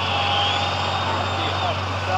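City street ambience: a steady hum of vehicle engines and traffic noise.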